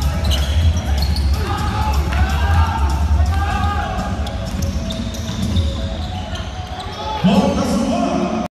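Live court sound of an indoor basketball game with no crowd: the ball bouncing, sneakers squeaking on the hardwood, and players' voices calling out, with one louder shout near the end.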